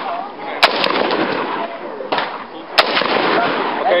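Gas-piston AR-15 rifle (LMT MRP upper, 16-inch barrel) firing two single shots about two seconds apart from a bipod, each a sharp crack, with a fainter crack just after the first, over steady outdoor range noise.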